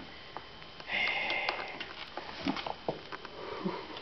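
A cat batting at a rubber toy on a sisal-rope cat tree: soft paw taps and light knocks spread through the second half. About a second in, a short breathy sound rises over them and is the loudest thing heard.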